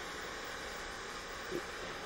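Steady hiss of a handheld gas torch's flame heating the brass boiler of a Hero's engine. A brief faint sound comes about one and a half seconds in.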